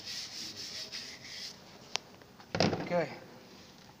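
A hand scrubber rubbing over the degreaser-soaked steel body of a casing advancer drill hammer, a scratchy scrubbing that stops about a second and a half in, followed by a single sharp click.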